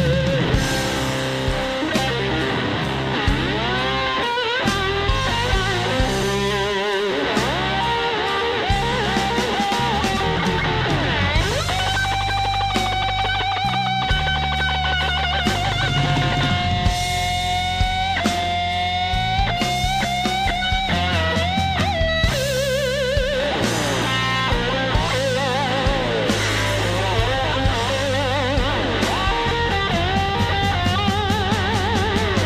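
Live blues-rock band with an electric slide guitar solo: the lead notes slide between pitches and waver with wide vibrato over steady bass and drums.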